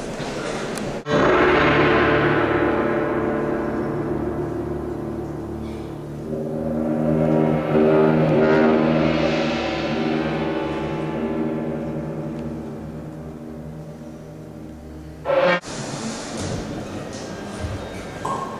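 Orchestra playing a loud sustained chord. It comes in suddenly about a second in, fades, swells again, and then dies away until it cuts off abruptly a few seconds before the end.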